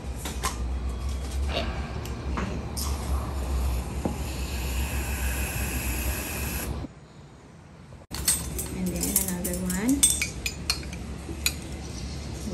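Metal spoons and utensils clinking against a stainless steel mixing bowl and glass dishes. A steady hiss runs for about four seconds in the middle and cuts off abruptly.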